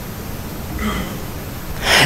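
A pause in a man's preaching: steady room noise through the sound system, with a faint voice-like sound about a second in and a quick intake of breath near the end, just before he speaks again.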